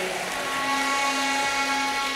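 A steady held tone with many overtones, level in pitch for about two seconds, then stopping.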